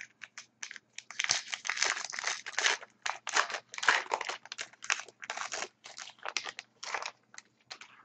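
Foil wrapper of an Upper Deck SPx hockey card pack being torn open and crinkled in the hands: a dense run of irregular crackling rustles for several seconds, thinning to a few separate crinkles near the end.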